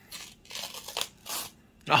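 A chia seed packet being torn open by hand: paper tearing in a few short rips.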